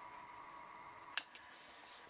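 Stiff paper card being handled and shifted on a sheet of paper on a desk: one sharp tick about a second in, then faint rustling near the end, over a quiet steady hum.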